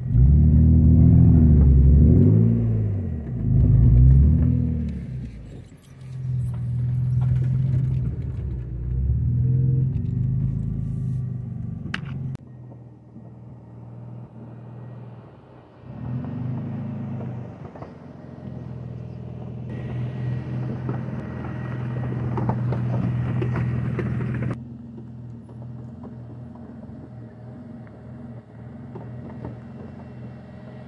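BMW Z3 roadster's engine revving up and down on a dirt road for the first few seconds, then running steadily. The sound drops away abruptly about a third of the way in and again near the end.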